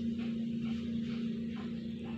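Water trickling faintly from a plastic mug onto a plastic plate, over a steady low hum.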